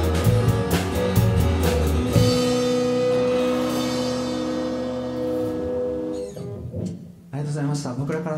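A rock band with drum kit, electric bass, and acoustic and electric guitars plays the last bars of a song and stops together on a final hit about two seconds in. The last chord rings on and fades away over about four seconds. A man's voice starts speaking near the end.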